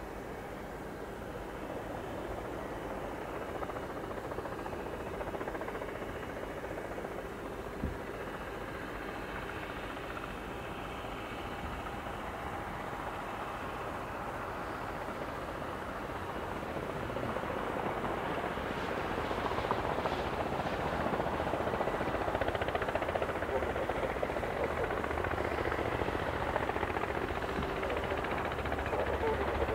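Kamov Ka-226 coaxial-rotor helicopter hovering low, its rotors and turbine whine running steadily. The sound grows louder over the last third as it comes closer.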